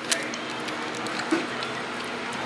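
Steady background noise of a fast-food dining room, with a sharp click just after the start and a faint brief low sound about a second and a half in.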